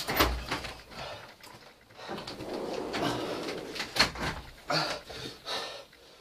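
Wordless voice sounds from people reeling from the heat of the chillies they have just eaten: hard breathing and low moans. There are a couple of dull thumps, one near the start and one about four seconds in.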